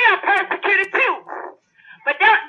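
A woman's high-pitched, excited voice exclaiming in quick syllables with no clear words, pausing briefly near the end.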